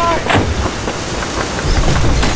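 Battle sound-effects ambience: a dense, continuous low rumble with scattered gunshots, one sharp shot about a third of a second in, and shouting voices at the very start.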